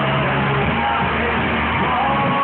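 A live rock band playing loudly and steadily.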